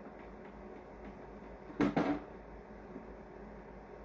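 Quiet room tone, broken about two seconds in by one brief double sound.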